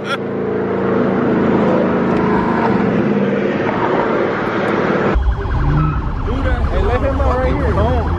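Car engine and road noise heard from inside the cabin while driving, a steady drone whose pitch rises slightly. About five seconds in it cuts abruptly to loud music with heavy bass and a wavering higher line.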